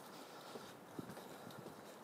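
Faint footsteps, a few short knocks of hard soles about half a second apart, over quiet street background noise.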